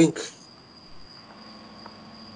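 A man's word trails off just after the start. Then comes a pause filled only by a faint, unbroken high-pitched whine over low hiss.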